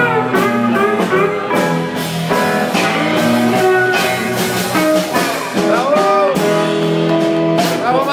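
Live blues band playing: electric guitar with bent, rising-and-falling notes over drums and a second guitar.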